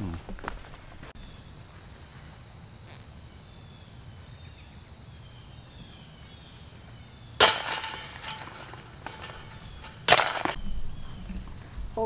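Disc golf basket chains rattling as discs strike them: a sudden metallic chain jingle lasting over a second, then a second, shorter jingle about three seconds later.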